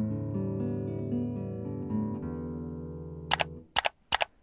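Nylon-string classical guitar playing a slow fingerpicked arpeggio, single notes plucked in turn and left ringing together, dying away about three and a half seconds in. Two sharp clicks near the end.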